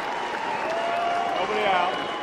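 A small ballpark crowd cheering and clapping in a steady wash of noise, with faint shouts through it, in reaction to a run-scoring double.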